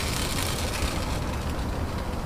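Steady rushing noise with a low rumble underneath: the propane burners of a Blackstone flat-top griddle running.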